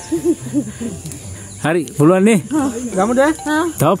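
A person's voice making wordless, drawn-out calls in several separate bouts, louder from about a second and a half in, ending in a 'hmm'.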